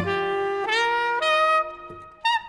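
Saxophone playing a slow melody of held notes over acoustic guitar accompaniment. The line steps up in pitch twice and fades near the end.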